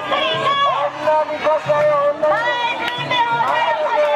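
Women mikoshi bearers chanting and shouting together as they carry the portable shrine, many high voices overlapping over a festival crowd.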